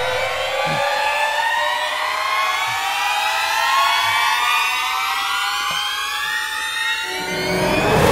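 A film background-score riser: a cluster of held tones that slowly and steadily climb in pitch, building suspense and swelling slightly toward the end.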